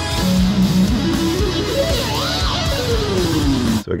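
Electric guitar music: a rhythmic riff of low notes with a long downward pitch slide, cutting off abruptly near the end.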